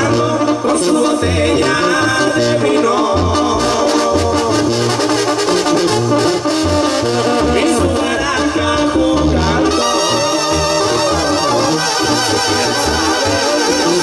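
Banda sinaloense brass band playing live through the PA: a tuba carries a moving bass line under brass and percussion. The sound fills out in the highs from about ten seconds in.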